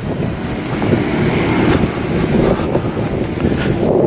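Loud, steady rushing of wind buffeting an outdoor microphone, with a rumbling low end.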